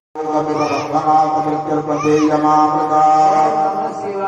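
Hindu priests chanting mantras in long, steady held notes, amplified through microphones. The sound drops out for an instant at the very start.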